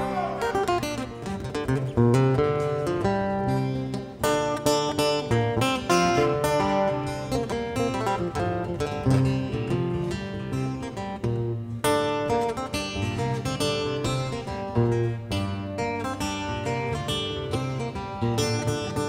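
Two acoustic guitars played together live, a stream of plucked melodic notes ringing over recurring low bass notes.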